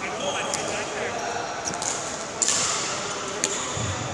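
Badminton rally in a large hall: sharp racket strikes on the shuttlecock, the loudest about halfway through, with short squeaks of shoes on the court floor and a murmur of voices echoing in the hall.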